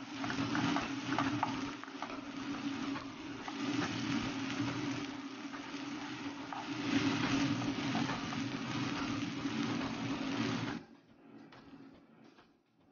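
Scrambled eggs with tomato sizzling in a nonstick frying pan while being stirred, with small scraping clicks of the utensil over a steady low hum. The sizzling cuts off suddenly about a second before the end.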